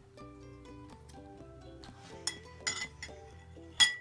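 Background music with steady held notes. A metal spoon clinks against a glass bowl three times in the second half, the last clink the loudest and ringing briefly.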